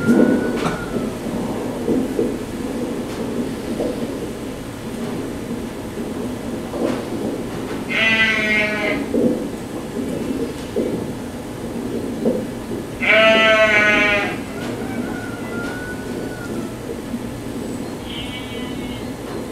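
Soundtrack of a projected film playing in the room: a steady low rumbling drone, broken by two brief, wavering, high cries about eight and thirteen seconds in.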